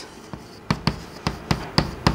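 Chalk tapping and knocking against a blackboard while words are written: a quick run of sharp taps, several a second, that starts under a second in.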